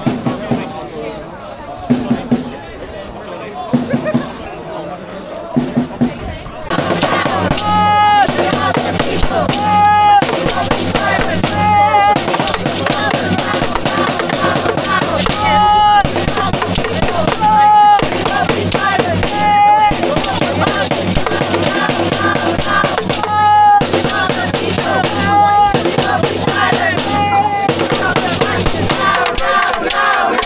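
Protest crowd chanting in unison to drums beaten with sticks. A few loose drum hits come first, then about seven seconds in the drumming and chanting start together and run loud and steady, with the chant repeating about every two seconds.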